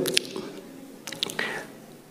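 A few faint clicks and small knocks in a quiet pause, with a brief faint voice about a second and a half in.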